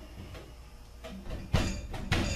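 Galvanized sheet-metal ductwork being handled: a short burst of metal scraping and rattling about a second and a half in, after a quiet stretch.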